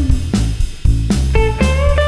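Blues-rock trio playing live: a lead electric guitar with bent notes over bass guitar and a drum kit. The drums keep a steady beat, with a brief drop in the playing just under a second in.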